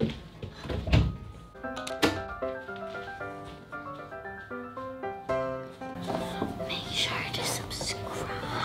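Background music, a light melody of short notes, with two sharp knocks about one and two seconds in.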